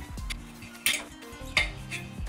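Steel pliers clicking and scraping against the slit edge of a titanium scooter bar as the burrs are worked back and forth and cracked off, with two sharp metallic clicks, about one second in and again past the middle. Background music plays underneath.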